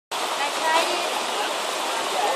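Shallow river water rushing steadily over a rocky bed, with faint voices under it in the first second.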